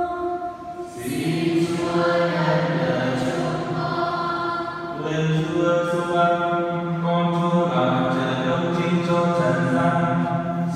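A single voice ends a held chanted note at the very start. From about a second in, a church congregation sings a slow chanted response together in long held notes, stepping from pitch to pitch.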